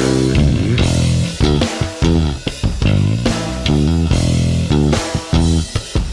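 Music Man StingRay Classic electric bass playing a line of plucked notes with slides between pitches and short gaps between notes.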